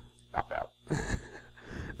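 Two short, quiet chuckles from a person on the podcast, about half a second and a second in.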